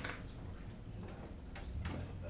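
Three light clicks, one at the start and two in quick succession near the end, over a steady low room hum.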